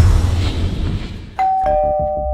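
Two-tone doorbell chime: a high note and then a lower ding-dong note about a second and a half in, both ringing on. Before it, a loud rushing noise fades away.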